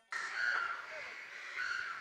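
A bird calling twice, two short calls a little over a second apart, over faint background noise.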